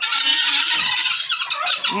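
A flock of helmeted guineafowl calling together: a dense, continuous chatter of many overlapping short calls.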